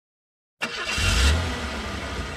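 Bus engine sound effect starting suddenly about half a second in: a low rumble that swells and then settles to a steady run.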